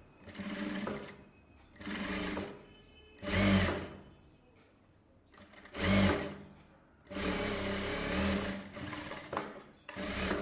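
Industrial flat-bed sewing machine stitching in stop-start runs: four short bursts of under a second each, then a longer run of about two and a half seconds in the second half.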